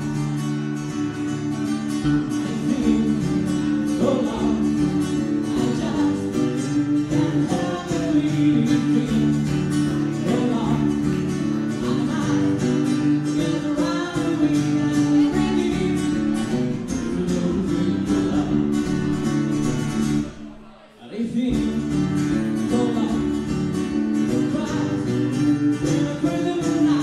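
Live band playing a song: acoustic guitar and electric bass with a male singer. The music cuts out for about a second roughly twenty seconds in, then comes back in.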